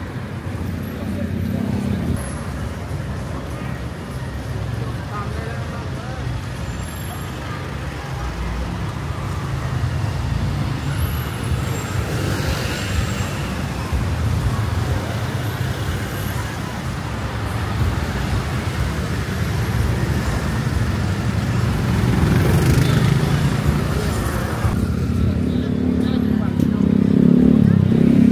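City street traffic: vehicles passing with engines running and tyre noise, with people's voices mixed in. A vehicle gets louder near the end.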